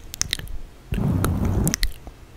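Dry ASMR mouth sounds close to a microphone: a few sharp tongue and lip clicks, then about a second in a low, muffled crackle lasting about a second, with more clicks on top.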